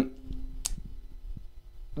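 A pause in speech: faint low room hum with one short, sharp click about two-thirds of a second in.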